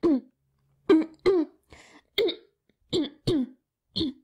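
A person clearing their throat over and over, about seven short falling grunts with pauses between them: a long, deliberately meaningful throat-clearing acted out in a radio play.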